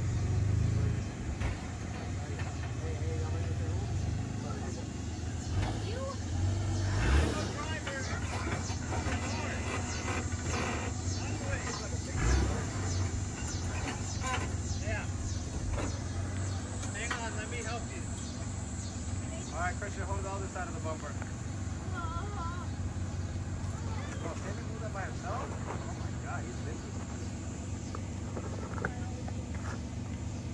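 Toyota Land Cruiser 80-series engine running steadily at low revs, with voices talking in the background and two heavy thumps, about seven and twelve seconds in.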